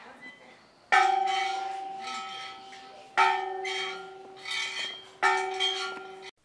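A bell struck three times, about two seconds apart, each stroke ringing on and slowly fading before the next. The sound cuts off suddenly just after the third stroke.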